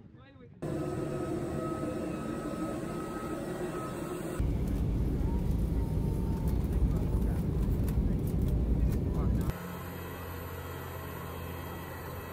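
Cut-together recordings: a steady mechanical hum with a few held tones, then, for about five seconds, the loud steady low rumble of a jet airliner's engines heard from inside the cabin. It ends with a quieter steady hum with low held tones on the airport apron beside a parked Airbus A320.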